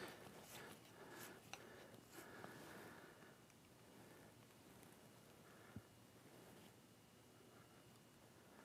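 Near silence: quiet room tone with a handful of faint ticks, most in the first few seconds and one a little after the middle, from hands working the fluid head's counterbalance knob and tilting the camera on the head.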